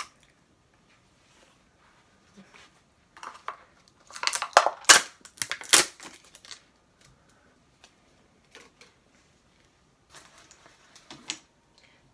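Handling noises of a glass jar candle: scattered rustles and clicks, with two sharp knocks about five and six seconds in and more rustling near the end.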